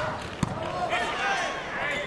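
Indoor volleyball rally: a sharp hit on the ball about half a second in, then high squeaks of players' shoes on the court floor over steady arena crowd noise.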